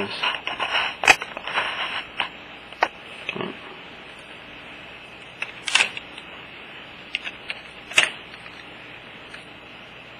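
Handling noise from fingers on a handheld camera and the loose circuit board and LCD panel of a disassembled tablet: rustling for the first couple of seconds, then a few sharp clicks and taps spread out over a steady hiss.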